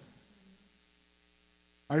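Near silence: room tone with a faint steady hum. A man's voice starts right at the end.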